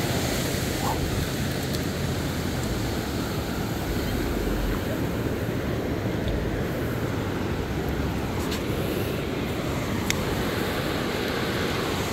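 Steady wash of ocean surf on a sandy beach, mixed with a low rumble of wind on the microphone.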